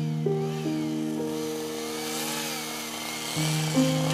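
Background music of sustained chords that shift every second or so, with a faint chainsaw engine rising and falling in pitch behind it.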